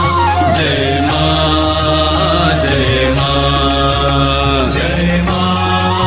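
Devotional Indian hymn (bhajan): voices chant long held notes over a steady low drone, the melody sliding down about half a second in and again near the fifth second.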